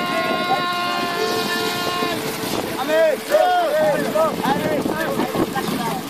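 Voices singing over a steady hiss of wind and sea: one long held note, then from about two and a half seconds in a quick run of short rising-and-falling sung phrases.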